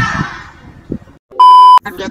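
A single loud electronic bleep near the end, a steady high-pitched tone just under half a second long that starts and stops abruptly, after the tail of voices fades to a brief silence.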